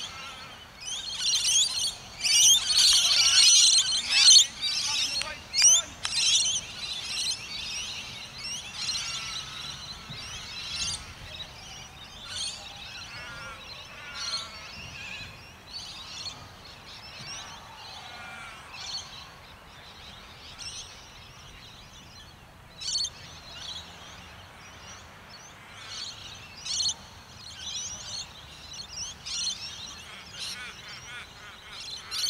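Birds chirping and calling: a dense burst of high chirps for the first several seconds, then scattered short calls.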